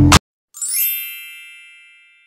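Background music cuts off abruptly. About half a second later a single bright, high chime sound effect rings out and fades away over about a second and a half.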